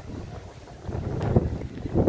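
Wind buffeting the microphone: a low, unpitched rumble that grows louder about halfway through.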